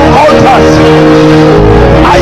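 A congregation praying aloud all at once, voices rising and crying out, over sustained keyboard chords whose bass shifts to a new chord near the end.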